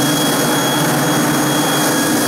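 Kärcher walk-behind floor scrubber-dryer running steadily as it is pushed across a tiled floor, its motors giving an even hum with a thin high whine.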